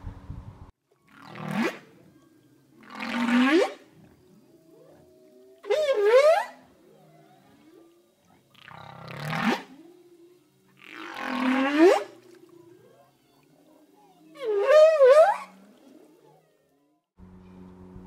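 Whale calls: six long calls a few seconds apart, some sweeping upward in pitch and some wavering, with faint low moans between them.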